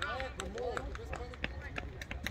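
Voices calling out across a football pitch during play, most of them in the first second, with several sharp clicks later on and a steady low rumble underneath.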